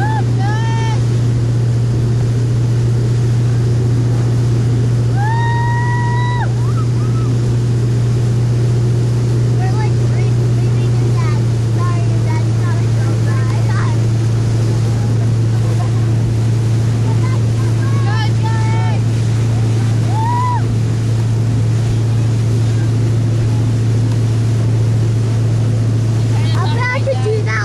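Motorboat engine running at a steady drone while towing, with water rushing past the hull. Occasional brief shouts from voices are heard, one of them held for about a second and a half about five seconds in.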